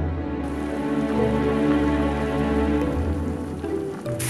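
A pot of broth with mushrooms at a rolling boil: steady bubbling that comes in about half a second in. Background music with held notes plays throughout.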